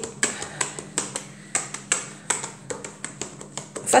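Stainless-steel rolling pin tapped down in quick light strokes onto sugared, layered croissant dough on a wooden board, a few sharp taps a second, pressing the butter in between the dough layers.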